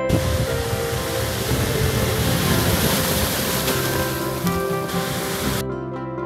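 Loud rushing noise of a 4x4 on the move, heavy in rumble, over plucked-string background music. The noise starts suddenly and cuts off about half a second before the end, leaving the music alone.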